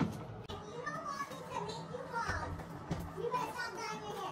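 Children's voices talking quietly, too low for the words to be made out.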